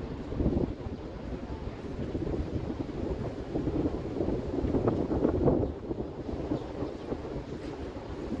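Wind rumbling on the microphone, swelling in gusts about half a second in and again around five seconds.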